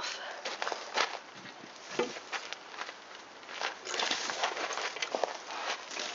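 Irregular rustling, scraping and light knocks of a chicken-wire cover being worked loose and lifted off a garden bed.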